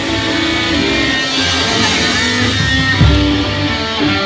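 Live rock band playing an instrumental passage: electric guitars over a drum kit, with a guitar note bending up and back down about two seconds in and a heavy drum hit about three seconds in.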